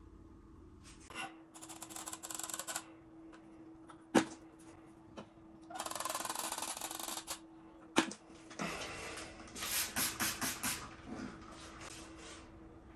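Hand work on a bathroom silicone joint with a mastic gun and a lolly stick: three scratchy rasping bursts, each one to two seconds long, and two sharp clicks, about four and eight seconds in. A faint steady hum runs underneath.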